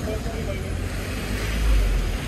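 Street traffic on wet road: a steady low rumble with tyre hiss, swelling a little near the end.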